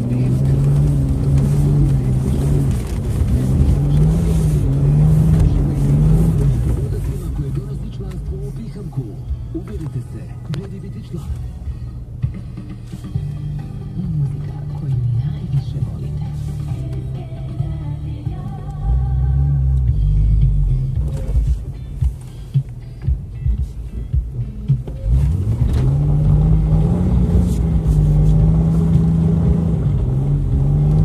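A Jeep's engine, heard from inside the cab while it is driven over a rough dirt track. Its pitch rises and falls over the first several seconds, eases off in the middle, and climbs again about 25 seconds in. A car radio plays talk and music underneath.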